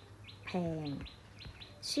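A bird chirping over and over in the background: short, falling chirps that come several a second in quick runs.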